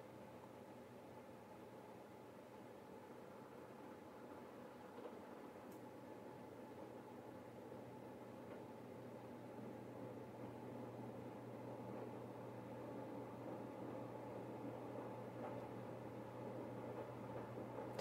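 Faint rustling of masking tape being slowly peeled off watercolor paper, over a steady low room hum. The handling noise grows a little through the second half.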